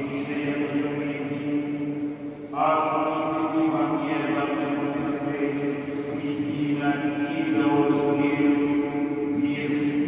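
Prayer chanted in long, sustained notes, in the style of Orthodox church chant: one low note is held steadily throughout while the voice above it moves to new notes about two and a half seconds in and again around seven and eight seconds.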